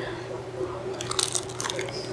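A bite into a pastry topped with almond streusel: a few short crunches about a second in.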